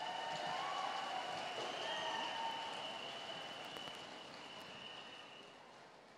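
Audience applauding, the clapping gradually dying away.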